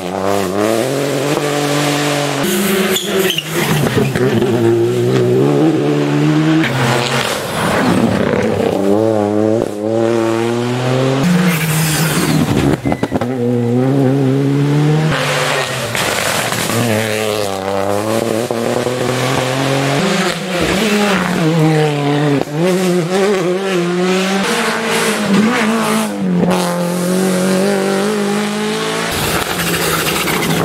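Rally cars, among them a Peugeot 208 Rally4, passing one after another on a tarmac stage. Each engine revs hard, its pitch rising and falling over and over through gear changes and lifts for the corner.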